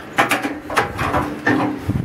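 Irregular mechanical clicks and knocks, about six in two seconds.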